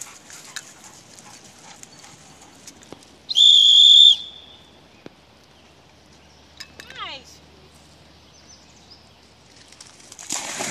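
A single steady, high-pitched whistle blast of under a second, a dog-recall whistle, about three seconds in; a short falling squeal follows a few seconds later.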